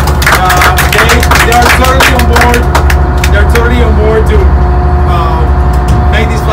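A man speaking close and loud over a steady low drone with a fast pulse, typical of the boat's engine running below decks.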